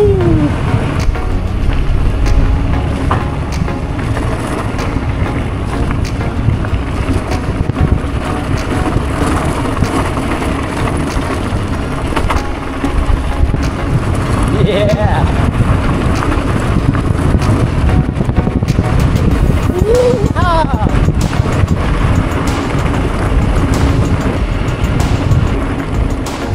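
Wind buffeting the microphone and a gravel bike's tyres rolling over a rough dirt road, with frequent small rattles and clicks from the bumpy ride. A few short rising-and-falling tones cut in three times.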